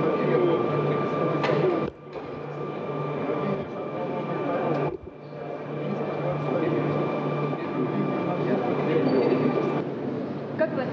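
Indistinct voices and busy room noise with a steady high whine and a low hum. The sound drops out abruptly twice, about two and five seconds in.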